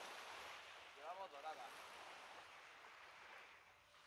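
Faint, steady hiss of surf, with a short murmured voice about a second in.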